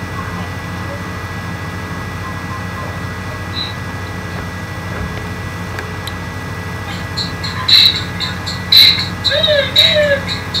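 Steady electrical hum and hiss of a recording microphone, with no music. Several loud short bursts of noise come in the last three seconds as the camera is handled at very close range.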